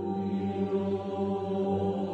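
Background music: slow choral singing in long held notes, changing chord only gradually.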